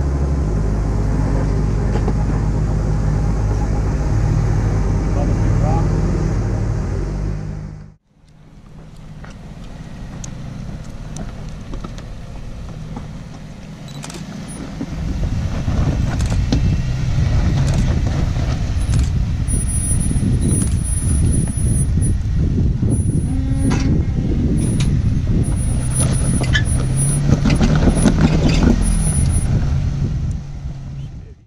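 Jeep Wrangler engine running at low revs on a rock-crawling trail, with the knocks and crunches of tyres and underbody working over rock. The sound cuts off abruptly about eight seconds in, then the engine builds again a few seconds later as the Jeep climbs a ledge, with frequent sharp knocks of rock.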